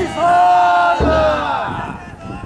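Float bearers chanting together in one long held call that falls slightly in pitch and fades near the end. A deep drum beat sounds about halfway through.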